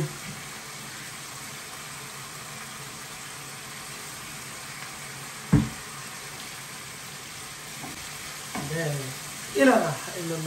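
Food sizzling steadily in a frying pan on a hob, with a single sharp knock about five and a half seconds in.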